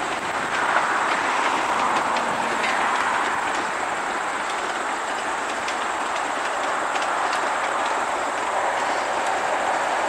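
Passenger train cars rolling past on steel rails, a steady noise of wheels on track with faint clicks over the rail joints. The noise is a little stronger in the first few seconds, then holds even.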